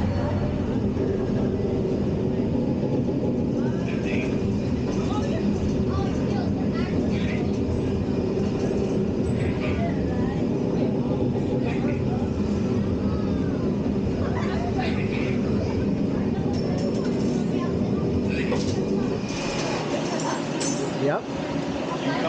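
Motion-simulator ride cabin tilting its seated riders onto their backs into the vertical launch position, with a steady low mechanical rumble and hum. Faint voices come and go over it.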